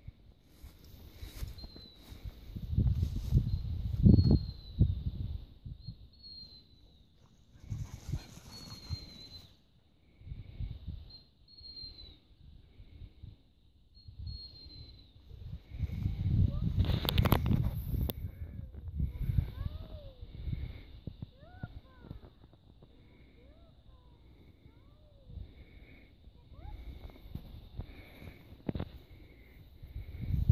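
Outdoor field ambience: low rumbling gusts of wind on the microphone, loudest about four seconds in and again around seventeen seconds. Short high bird chirps and calls sound between the gusts.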